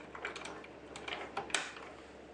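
A few light clicks and taps of a sewing machine's bobbin case being fitted back into the hook housing, the sharpest click about three-quarters of the way through.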